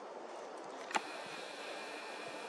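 Quiet outdoor background: a faint steady hiss with one short click about a second in.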